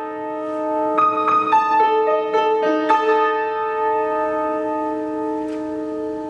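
Piano playing a solo interlude of sustained chords, with fresh notes struck about one, one and a half and three seconds in, each held and slowly fading.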